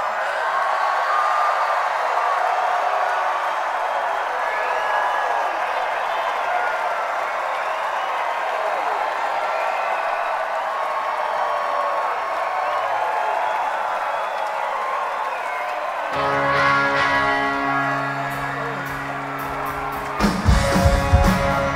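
A large concert crowd cheering and whooping. About 16 seconds in, the rock band's amplified instruments come in with steady held notes, leading into the next song.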